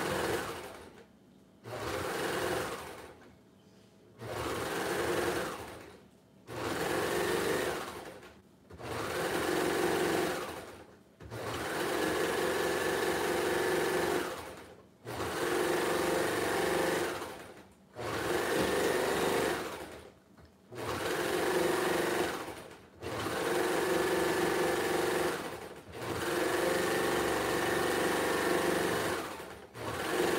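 Baby Lock Imagine serger (overlocker) stitching in about a dozen short runs, each one to three seconds long with a brief stop between. Each run spins up quickly and slows to a halt, the stop-start rhythm of stitching elastic to stretchy knit a little at a time.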